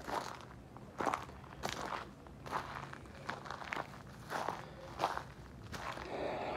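Footsteps crunching on loose gravel at an even walking pace, about one step every two-thirds of a second.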